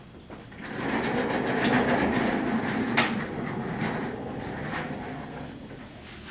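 Dry-erase marker scratching on a whiteboard as an equation is written, with one sharp tap about three seconds in.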